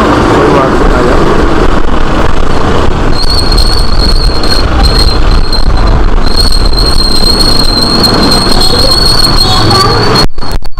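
Motor traffic in a narrow street, heard close up: a loud, steady low rumble, joined about three seconds in by a thin, high-pitched whine that holds to the end.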